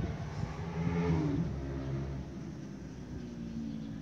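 A motor vehicle's engine going by in the background, loudest about a second in and then slowly fading.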